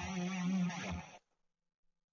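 The last note of a distorted, sampled electric guitar (Prominy SC through the Revalver MK3 amp simulator with stereo delay) dying away, cut off about a second in; silence follows.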